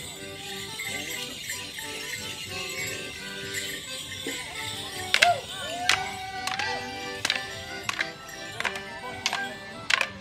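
A Morris dance tune played live, with bells jingling. From about halfway there are sharp clacks of wooden dance sticks struck together, roughly every two-thirds of a second.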